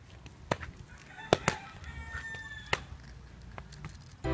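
A rooster crowing, one held call in the middle, over a few sharp clicks and knocks from the clay toy cars with plastic wheels being handled on the ground.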